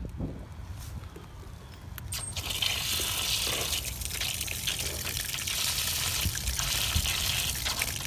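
Water running from an outdoor faucet into a plastic bin of compost, splashing onto the soil and pine needles. The stream starts about two seconds in and then runs steadily.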